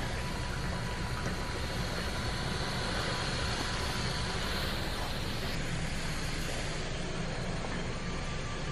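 Steady, even hiss of hospital-room background noise, with a faint thin steady tone running through it.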